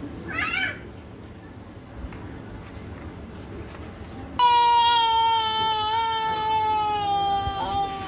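A young child's long, steady wailing cry starting about four seconds in and held for some three seconds, its pitch slowly sinking, before cutting off.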